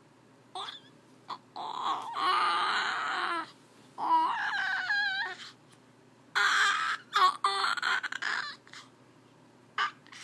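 Baby cooing and babbling: three long vocal stretches with a wavering, gliding pitch, separated by a few short squeaks.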